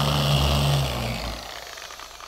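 Meguiar's dual-action polisher fitted with a sanding disc, running on bare car paint with a steady motor hum and sanding hiss, then dying away about a second and a half in.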